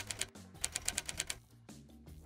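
Typewriter key-click sound effect, a rapid run of about eight clicks a second that types out on-screen text and stops about a second and a half in.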